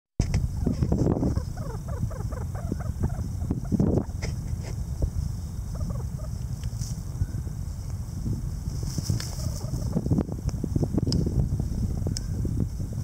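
Mountain quail dust-bathing in loose dirt: scuffing and flicking of soil and feathers in short spells throughout, with a quick run of soft chattering notes in the first few seconds, over a steady low rumble.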